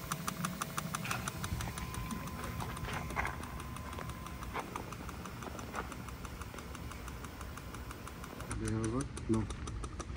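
Rapid, even ticking over a low hum from a Mercury outboard's electric oil pump being cycled from a laptop to prime the engine's oil system, with the engine not running.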